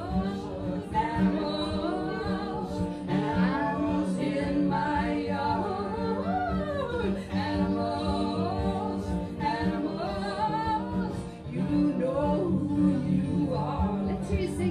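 Live folk song: a steady low drone under several singing voices that slide up and down in pitch, a group imitating animal calls in the song's chorus.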